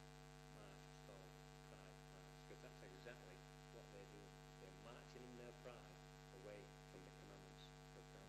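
Near silence over a steady electrical mains hum in the recording, with faint, indistinct voice-like sounds now and then.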